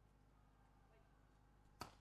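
Near silence broken once, near the end, by a single sharp smack of a hand striking a beach volleyball in a spike.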